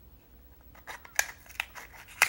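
Scissors cutting open a small paperboard box: a quick run of sharp snips and crackles that begins nearly a second in, the sharpest about halfway.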